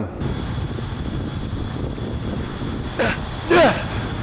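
Steady low rumble with a faint high whine, typical of a camera drone's propellers hovering close by. A voice calls out briefly twice about three seconds in.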